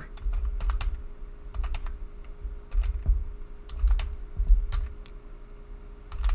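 Computer keyboard typing: irregular keystroke clicks as a terminal command is entered, with a faint steady hum beneath.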